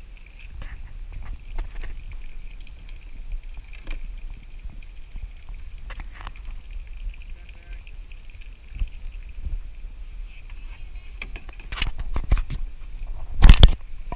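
Low rumble of wind and water on a kayak-mounted camera, with scattered light knocks of a grabber and paddles against plastic kayak hulls. A cluster of knocks comes near the end, then one loud knock.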